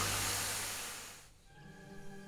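A steam-engine hiss of released steam, fading away over about a second and a half as the locomotive comes to rest. Soft sustained music comes in just after it.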